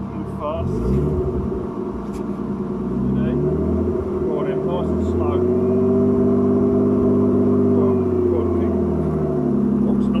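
Nissan Laurel C33's RB20DET straight-six engine running, revs climbing about a second in, held up through the middle and dropping back near the end, as the car is eased along to roll out its rear wheel arch.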